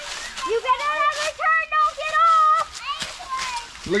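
A young child's high-pitched voice in one long, wavering shout, starting about half a second in and lasting about two seconds, with a couple of sharp clicks and another short child's call near the end.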